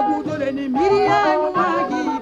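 Woman singing a West African song over instrumental backing, holding long notes and sliding between pitches.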